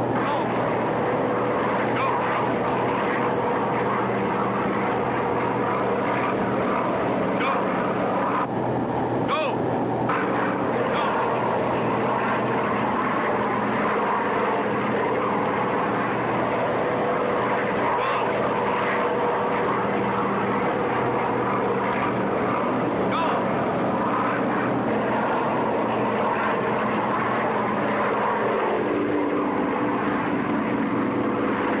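Steady drone of propeller transport aircraft engines during a parachute drop, holding an even pitch, with a slight change in tone near the end.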